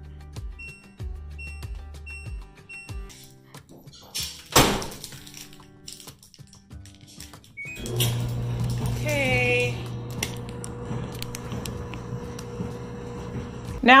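LG clothes dryer's control panel beeping several times as the dry-level button is pressed, with a knock about halfway through. About 8 s in the dryer starts, and its drum and motor hum steadily from then on.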